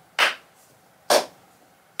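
One person clapping their hands slowly and evenly, about one clap a second, sharp claps with a short ring of room after each.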